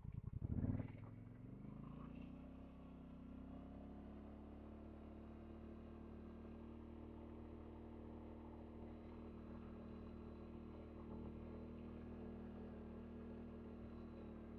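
ATV engine pulling away: its low hum rises in pitch over the first couple of seconds as the quad speeds up, then settles into a steady, faint drone at cruising speed.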